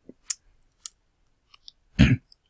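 A few short, faint clicks scattered through a pause, with no speech.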